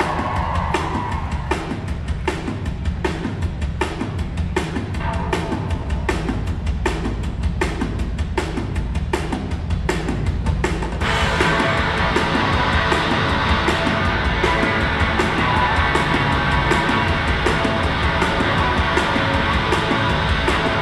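Rock band playing live: the song opens with drums and bass keeping a steady beat, and about eleven seconds in the guitars come in and the music becomes louder and fuller.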